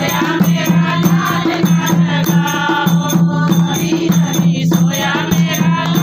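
A dholak beaten by hand in a steady, driving rhythm while a group of women sing along and clap.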